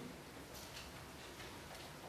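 Quiet room tone in a small room, with a few faint ticks.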